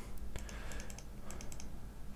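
Several light, scattered clicks of a computer mouse and keyboard over a faint steady hum.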